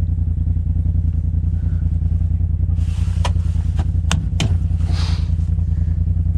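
Polaris RZR side-by-side's twin-cylinder engine running steadily at low speed while crawling a rocky trail, heard from inside the cab. A few sharp knocks and rattles come about halfway through.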